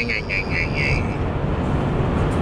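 Steady low road and engine rumble inside a moving car's cabin. A high, wavering voice trails off during the first second.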